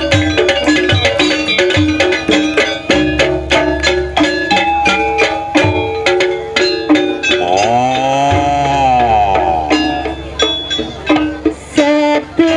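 Traditional jaranan accompaniment music: fast, busy hand-drum strokes over repeated pitched gong-chime notes. About two-thirds of the way through, a long wailing melody note rises and falls.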